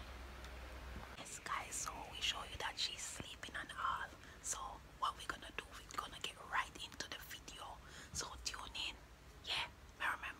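Whispered speech close to the microphone, starting about a second in, after a brief low hum.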